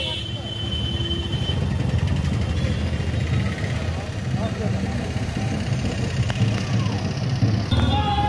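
A car's engine running with a steady low rumble, mixed with street traffic and indistinct voices close by.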